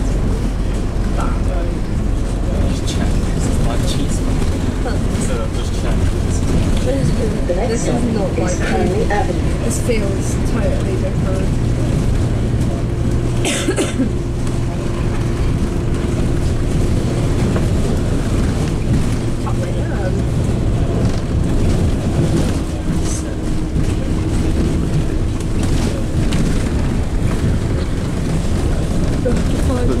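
Interior of a moving bus: steady engine and road noise with scattered small rattles, and a steady low hum from about a third of the way in until near the end.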